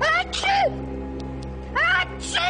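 Cat meowing: two double cries, each a rising call followed by a falling one, over a low sustained drone of film music.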